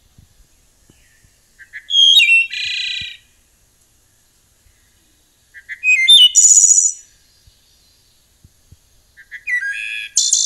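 Wood thrush singing: three flute-like song phrases about four seconds apart, each opening with a few short notes and ending in a fast trill. The third phrase begins near the end.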